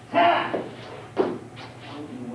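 Two loud, short shouts from a man: the first about half a second long, the second briefer about a second later, typical of a martial artist's kiai while finishing a takedown.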